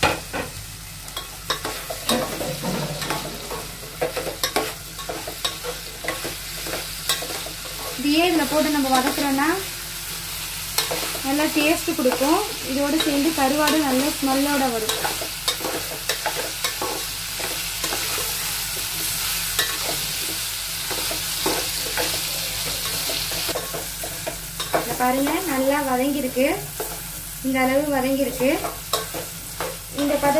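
A metal spoon stirring onions and green chillies frying in an aluminium pot, with frequent clicks of the spoon against the pot over a steady sizzle.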